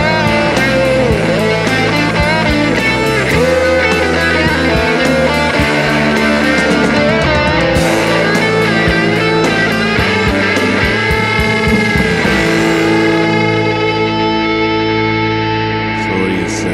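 Rock instrumental passage led by guitar, with no vocals. The beat drops out about twelve seconds in, leaving a held chord ringing.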